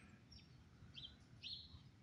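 Near silence, with a few faint bird chirps.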